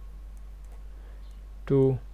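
Faint, scattered clicks of a computer mouse while lines are drawn on screen, over a steady low mains hum. A single spoken word comes near the end.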